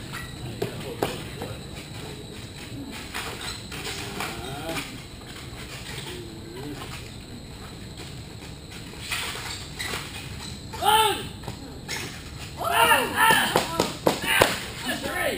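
People's voices, mostly faint, with a few loud high-pitched exclamations from about twelve seconds in, and a few light knocks.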